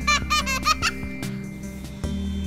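A young child laughing on a swing: about four short, high-pitched squeals of laughter in quick succession during the first second, over background music.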